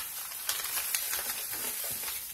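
A steady, crackly rustle with small clicks, the sound of makeup items being handled and rummaged through.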